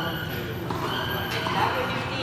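People talking in the background, with a couple of short knocks about two-thirds of a second apart, like a tennis ball bounced on the court.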